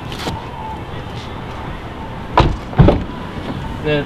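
Car door of a 2018 Nissan Kicks shut with two heavy thumps about half a second apart, over a steady background hiss.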